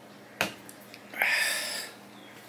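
A sharp click, then about a second later a loud, breathy exhale through the mouth lasting under a second.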